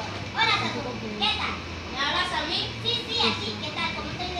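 Children's voices talking, high-pitched and unscripted-sounding, with no clear words picked up.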